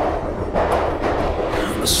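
London Underground train running, a steady low rumble with rail and carriage noise heard from inside the car.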